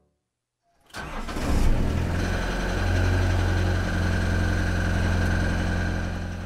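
Motorboat engine starting about a second in, then idling steadily.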